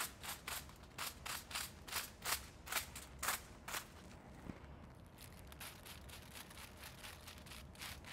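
Quiet scratchy strokes of a comb and tint brush working hair laid over aluminium foil during balayage foiling, about four strokes a second for the first few seconds, then fainter and closer together.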